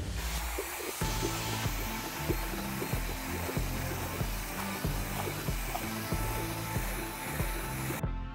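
Drill running steadily, spinning a mixing paddle through a five-gallon bucket of epoxy resin to whip as much air into it as it can, over background music with a steady beat.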